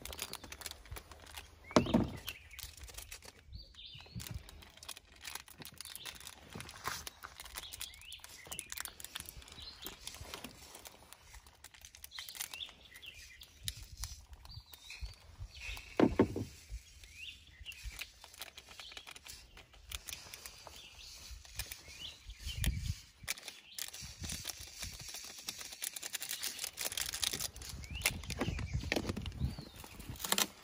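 Plastic jars, lids and a foil packet being handled while Tannerite is mixed: scattered clicks, knocks and rustles, the loudest about two, sixteen and twenty-three seconds in. Birds chirp faintly in the background.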